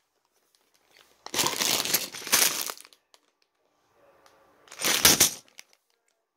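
Plastic Lego parts bag crinkling as it is handled, in two bursts: a longer one of about a second and a half, then a shorter one near the end.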